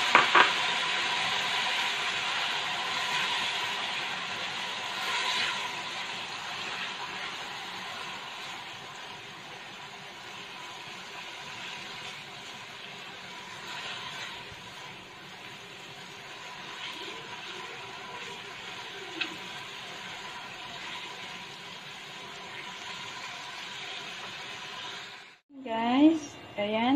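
Roasted pork and seasonings sizzling in a hot wok as they are stir-fried, with a few scrapes and knocks of a silicone spatula against the pan. The sizzle is loudest at the start and dies down gradually as the pan settles.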